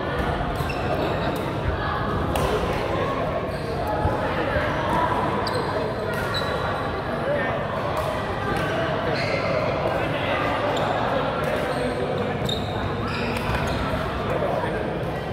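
Badminton rackets hitting shuttlecocks on several courts: sharp clicks at irregular intervals, mixed with short high squeaks of shoes on the court floor and indistinct chatter, all echoing in a large sports hall.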